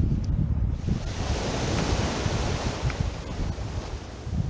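A small wave washing up the sand, a broad hiss that swells about a second in and fades near the end, over wind buffeting the microphone.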